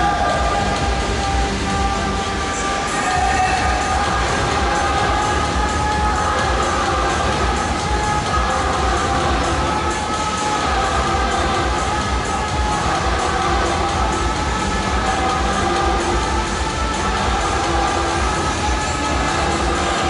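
Indoor swimming-arena ambience during a distance freestyle race: a steady low rumble with held, wavering tones, like music or horns from the stands, over a wash of crowd noise.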